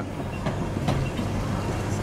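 Illuminated boat-shaped electric tram running past on its rails: a steady low hum with a couple of faint clicks from the wheels.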